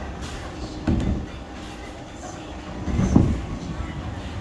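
Bowling alley din: a steady low rumble of balls rolling on the wooden lanes, with two heavier thuds, the louder one about three seconds in.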